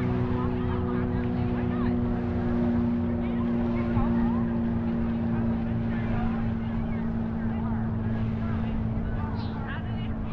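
A motorboat engine running steadily on the water, a low even hum that neither rises nor falls, with scattered voices of people on the beach behind it.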